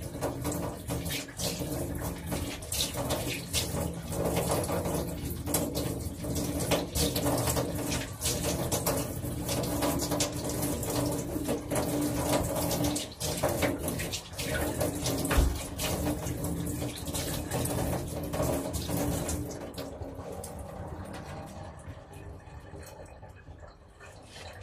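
Kitchen tap running into a sink, with irregular splashing as a small dog is rinsed under it, and a single thump about fifteen seconds in. The water dies away in the last few seconds.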